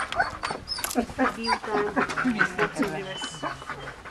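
People talking, with a Dobermann's vocal sounds mixed in among the voices.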